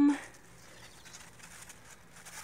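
A held, hesitant 'um' from a person's voice trails off right at the start, followed by faint scattered ticks and light rustle at a low level.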